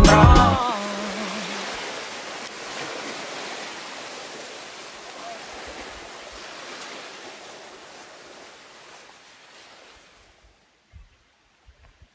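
A music track ends within the first second, with one low note held a moment longer. An even hiss follows and fades away slowly over about ten seconds, to near silence.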